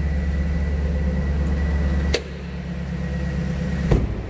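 2011 GMC Yukon Denali's 6.2 L V8 idling steadily just after start-up, heard from inside the cabin. A sharp click about halfway through, after which the rumble is quieter, and another click near the end.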